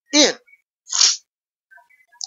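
A single short, breathy burst of air from a man about a second in, sharp and hissy with no voice in it. It comes just after a spoken word.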